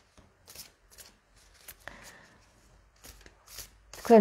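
A deck of cards being shuffled by hand: faint, irregular soft slaps and rustles of the cards against each other.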